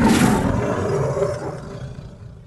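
A loud, sudden roar-like burst that fades away steadily over about two and a half seconds.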